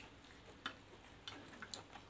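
Faint eating sounds from people eating rice and chicken by hand: a few short, sharp mouth clicks and smacks of chewing, one about two-thirds of a second in and a small cluster around a second and a half.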